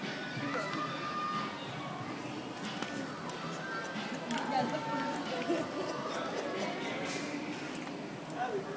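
Shop ambience: indistinct voices with background music playing.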